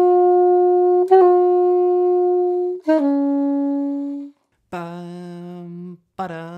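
Alto saxophone playing a slow practice drill on a sixteenth-note run: long held notes, each broken by one quick note, about a second in and again about three seconds in, the last held note lower and fading out. It is the method of holding the first note and playing the next one quickly to clean up a fiddly run.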